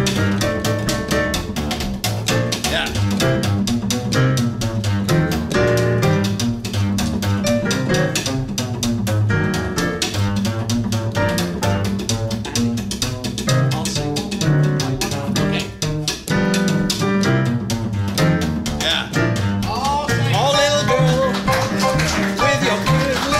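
Sextet playing an instrumental passage: a double bass line under quick, even rhythm strokes and piano chords, with a wavering melody line coming in near the end.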